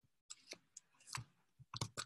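Faint clicking at a computer: about half a dozen short, separate clicks and taps, irregularly spaced.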